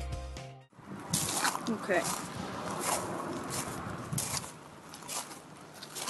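Music cuts out in the first second. Then come footsteps crunching on a gravel path, a short step every half-second to second, with a brief bit of voice about two seconds in.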